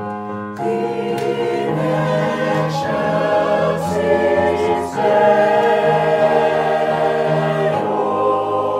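A choir singing held chords, the chords changing every few seconds.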